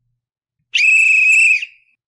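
A single whistle blast, one steady high note about a second long, that starts suddenly and fades away.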